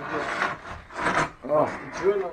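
Rough rubbing and scraping noises, with two louder scrapes about a third of a second and just over a second in, followed by a short pitched sound near the end.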